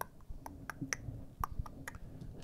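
Small plastic LEGO pieces being handled and picked from a loose pile, giving a series of light, irregular clicks.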